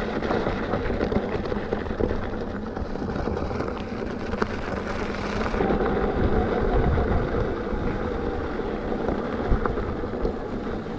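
Electric scooter ridden over a rough dirt trail: a steady rumble of tyres and vibration, with wind on the microphone and a few sharp knocks from bumps.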